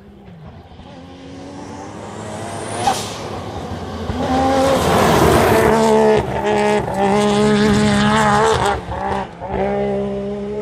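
Rally car approaching at speed on a gravel road and sliding past, getting steadily louder over the first five seconds, then running loud and high-revving with a few brief drops in the engine note, gravel and tyre noise under it. A single sharp crack about three seconds in.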